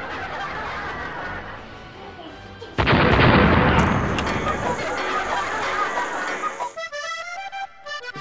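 A sudden loud burst of noise about three seconds in, like a crash or blast, which fades away over the next few seconds. Near the end, accordion music starts.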